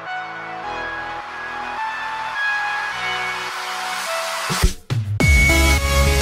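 Background music: slow, held notes that change every second or so. Just before five seconds in, the music briefly drops out. It then switches suddenly to louder electronic music with a heavy bass.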